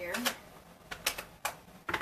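Several short, sharp clicks and taps at uneven intervals from craft supplies being handled on a desk: the stamp set being fetched and opened.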